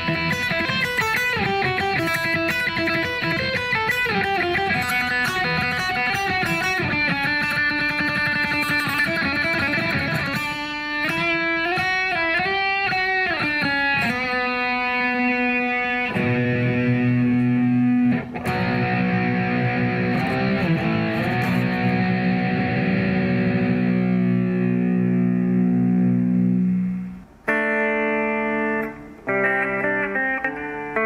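Solo Yamaha Pacifica electric guitar played through an amplifier with some effect on it. For about the first half it plays a quick picked single-note melody. Then a low chord rings out for about ten seconds and fades, and short chord stabs follow near the end.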